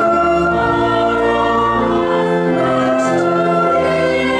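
Church choir singing a carol in held chords, with organ accompaniment and low sustained bass notes; the chords change about once a second.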